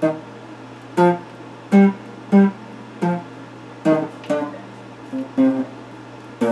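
Electric guitar picked slowly: about nine separate notes and short chords at an uneven pace, each ringing briefly, over a steady low hum.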